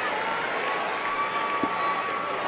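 Steady noise of a large stadium crowd, an even wash of many voices with no single voice standing out.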